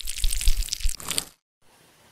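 Foley sound effect of tweezers peeling a flap of dead skin off a foot wound: a wet, crackling peel lasting about a second and a half, then a faint soft rustle.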